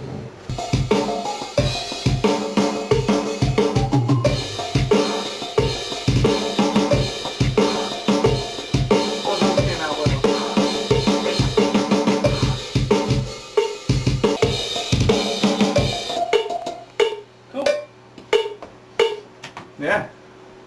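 Playback of a recorded rock drum kit track through studio monitors: a fast, steady kick drum pattern with snare and cymbals. It thins out to sparse hits about sixteen seconds in.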